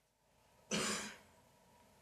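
A person clearing their throat once, briefly, a little under a second in.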